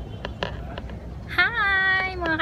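A cat meowing once: a single drawn-out call that starts about two-thirds of the way in, rising and then falling in pitch.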